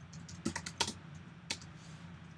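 Laptop keyboard keys being typed: a quick run of key clicks about half a second in, then one more about a second and a half in.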